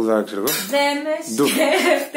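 A woman's voice talking playfully, saying "blah blah" in a sing-song way.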